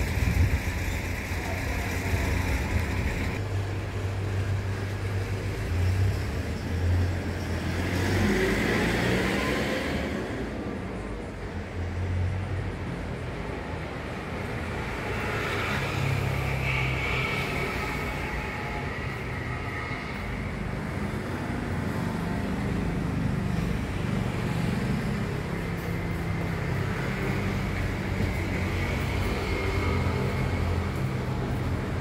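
Road traffic noise: vehicles running past, with one louder vehicle rising in pitch about eight seconds in.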